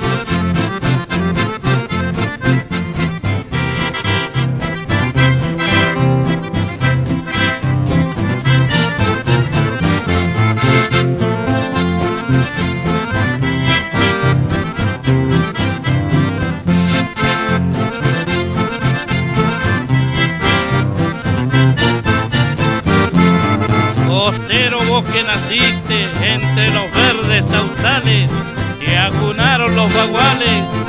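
Accordion-led instrumental valseado, a country-style Argentine waltz, with guitar accompaniment over a steady repeating bass. About two-thirds of the way in, a high wavering line that bends in pitch joins above the accordion.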